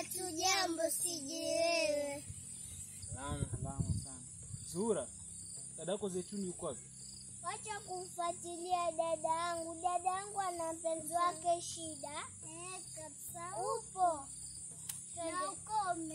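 Quiet children's voices talking in short phrases, with one voice held longer in the middle. A steady high-pitched insect buzz runs underneath.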